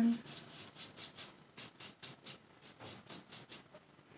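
Paintbrush spreading thick acrylic paint across a paper palette: a quick run of soft rubbing strokes, about four a second.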